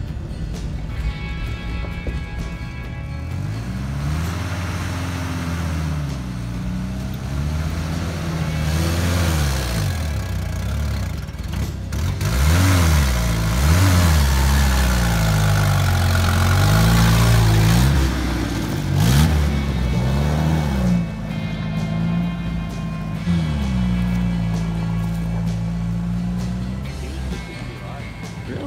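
Jeep engines revving up and down over and over as the Jeeps climb a rough dirt trail. The pitch rises and falls every few seconds and is loudest through the middle.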